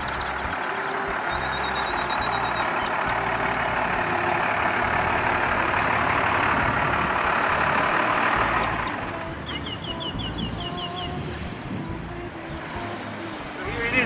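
White step-van food truck driving up, its engine and road noise swelling and then dropping away about nine seconds in as it pulls to a stop, over background music.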